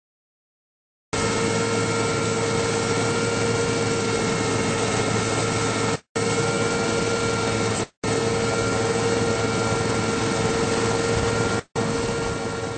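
Steady machinery drone with a constant hum running through it. It starts about a second in and cuts out for an instant three times.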